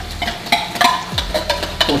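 Canned pinto beans being shaken out of the tin into a pot of hot sauce, which sizzles, with a run of sharp clicks and knocks of the metal can and utensil against the pot.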